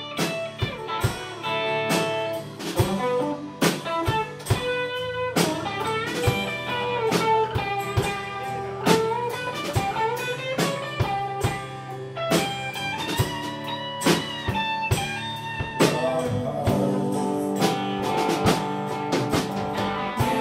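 Live band playing an instrumental passage: a guitar carries the melody with bent, sliding notes over a steady bass line and drum kit, with an acoustic guitar strumming underneath.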